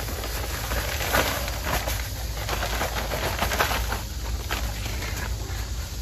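Play sand pouring from a plastic bag onto concrete stepping stones, a soft, even hiss with a few faint scuffs.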